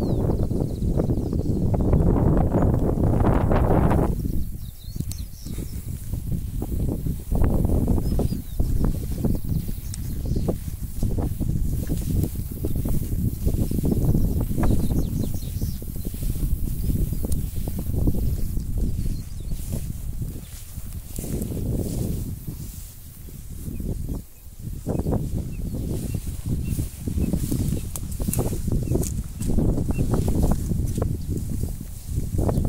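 Wind rumbling on the phone's microphone, swelling and dropping, with rustling of grass and scattered light footsteps as the person walks along the creek bank. The rumble eases briefly about four seconds in and again near twenty-four seconds.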